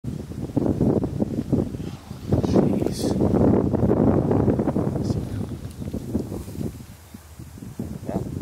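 Wind buffeting the microphone in gusts, heaviest through the first half and easing toward the end.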